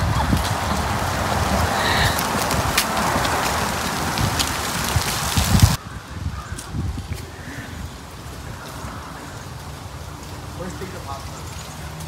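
Footsteps crunching and rustling through dry fallen leaves, a dense crackle that cuts off suddenly about six seconds in, leaving a much quieter outdoor background.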